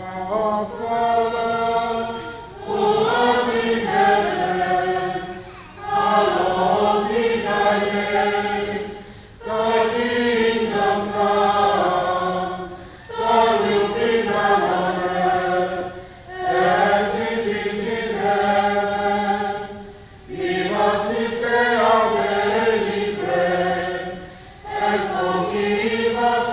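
A choir singing unhurried phrases of about three to four seconds each, with a short breath between phrases.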